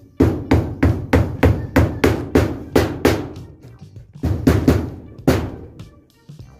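Hammer blows driving nails into wood, a steady run of about three strikes a second, then a short pause and a few more quick strikes.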